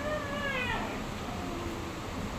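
A high-pitched animal call that falls in pitch over about half a second, followed by a fainter, lower call in the second half.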